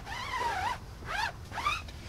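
Foam applicator pad wiping along a rubber tire sidewall, a rubbing sound with a few short squeaks that rise and fall in pitch.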